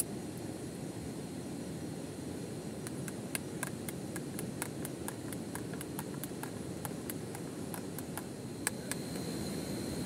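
A metal spoon clinking and scraping against an enamel camp mug while stirring a drink, in irregular light ticks from about three seconds in until near the end. Under it runs a steady low rushing background.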